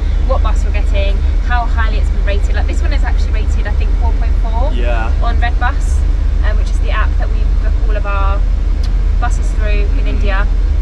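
Voices talking over a steady low rumble from the sleeper bus.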